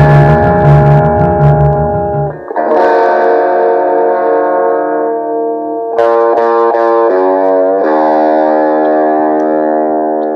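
Instrumental music: an effects-laden guitar holds sustained, ringing chords over a pulsing bass line. The bass drops out about two and a half seconds in, and the chords change a few times after that.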